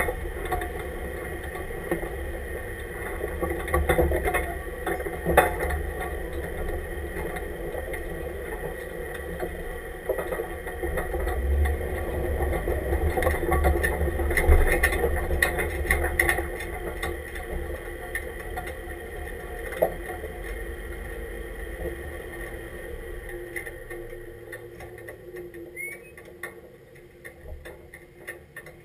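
An off-road truck's engine runs at low speed as the truck crawls over rock and sand, with occasional knocks from the chassis and tyres on the rough ground. The engine sound fades away over the last few seconds.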